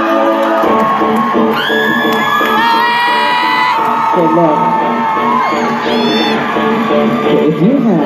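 A live band plays sustained chords through a hall PA. Audience members whoop and scream over it, with a long high scream a couple of seconds in and another short one about six seconds in.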